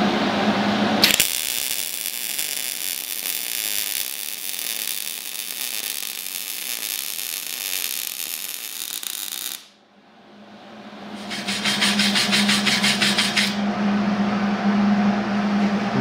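MIG welding arc on steel tube: a steady, loud crackle that begins about a second in, runs for about eight seconds as the bead is laid, and cuts off suddenly. A steady hum follows, with a short burst of fast rasping a couple of seconds later.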